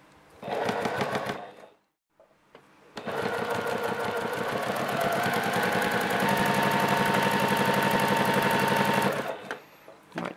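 Juki TL-2010Q high-speed straight-stitch sewing machine stitching a zipper into fabric: a short burst of stitching, a brief stop, then a longer steady run of about six seconds that stops shortly before the end.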